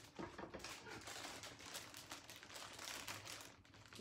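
Faint rustling and handling sounds from someone reaching around for a pair of scissors, over low room noise.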